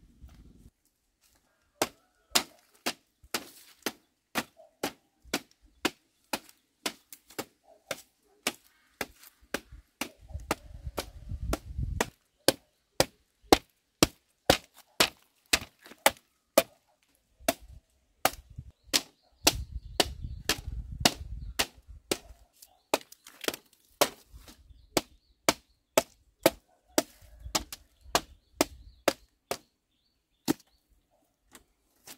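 Sharp knocks about twice a second, fairly loud: a thick piece of split bamboo striking the tops of bamboo fence slats, tapping them down into place.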